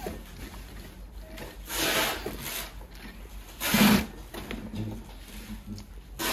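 Consew 205RB-1 industrial sewing machine stitching through six layers of thick denim in two short runs, one of about a second near two seconds in and a shorter one near four seconds.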